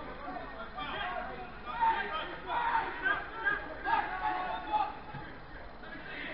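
Voices shouting across a football pitch, in several loud bursts between about one and five seconds in, over a steady faint background hiss.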